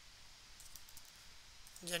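Faint clicks of computer keyboard keys being typed on, a few light keystrokes in two short runs; a man's voice comes in at the very end.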